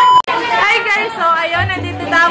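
Colour-bars test tone: a loud, steady, high beep, cut off abruptly a fraction of a second in.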